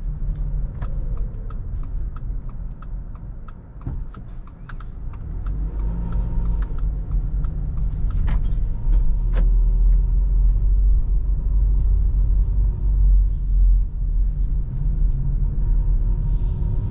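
Low rumble of a 2019 Subaru Forester e-BOXER hybrid heard from inside the cabin. A quick regular ticking, about three ticks a second, runs through the first few seconds. The rumble dips about four seconds in, then grows louder and holds steady.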